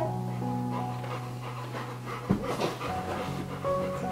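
A golden retriever panting, with a short run of quick breaths about halfway through, over steady background music.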